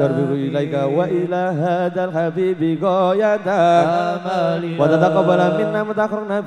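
A man chanting an Arabic supplication (du'a) in a slow, ornamented melody through a microphone and PA, over a steady low drone.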